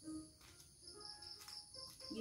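Near silence with faint high insect chirping: a steady trill, joined in the second half by a run of quick chirps, about four or five a second. A soft low knock at the start and a faint click later.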